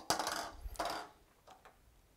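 Marker pen on a whiteboard: a tap as the tip meets the board, then about a second of scratchy writing strokes.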